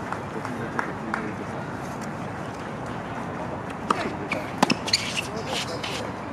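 Tennis being played on an outdoor hard court: several sharp racket-on-ball hits and ball bounces in the second half, over background voices.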